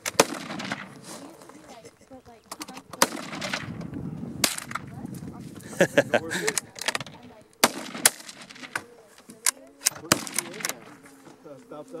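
Gunshots from small arms: about a dozen sharp single reports at irregular intervals, some a fraction of a second apart.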